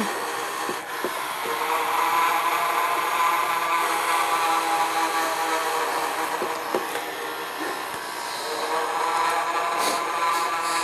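Small electric motor of an animated hanging ghost decoration whirring steadily as the figure rises and drops.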